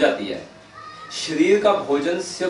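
A man speaking in Hindi, with a short pause about half a second in before his voice resumes.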